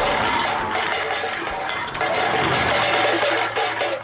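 Cartoon score music over a busy metallic clatter of tin cans tied to the back of a police car.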